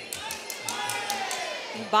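Fight crowd in a hall: a voice calls out in one long, falling shout, and a scatter of short sharp slaps or clicks sounds in the first second.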